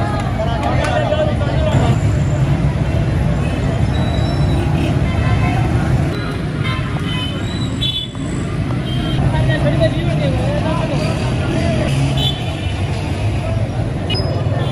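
Crowd chatter over a steady rumble of street traffic, with a few short high tones like horn toots.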